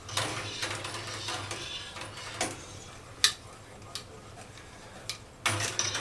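A stirring rod swishing through Parmesan curds and whey in a steel cheese pot, with a few sharp clinks as it knocks the pot, the loudest a little past the middle.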